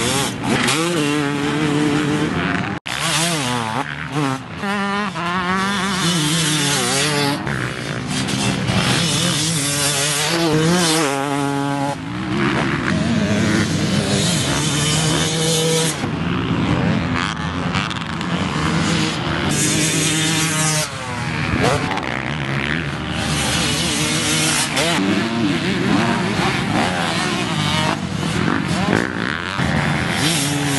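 2014 TM 250 two-stroke motocross bike engine revving hard and dropping back over and over as it is ridden around the track, its pitch rising and falling with each burst of throttle. The sound breaks off abruptly for an instant about three seconds in.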